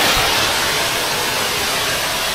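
Pressure washer running, a steady hiss of spraying water.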